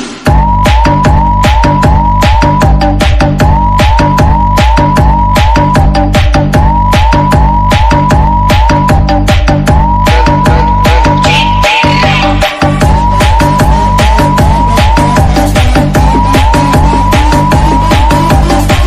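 Electronic dance remix with a heavy pounding bass beat and a short rising siren-like synth whoop repeated over and over. The bass drops out for a moment about two-thirds of the way through.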